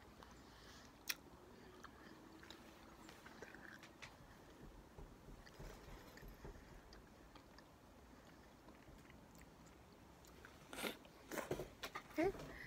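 Near silence with faint chewing of Skittles candy: soft scattered clicks, with one sharp click about a second in. A few louder knocks come near the end.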